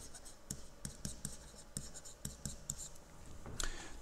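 Stylus writing on a tablet: faint, irregular ticks and short scratches of the tip on the surface as characters are written out by hand.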